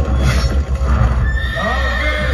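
A horse whinnying on a film soundtrack played through cinema speakers, the whinny rising and falling in the second half over a deep low rumble.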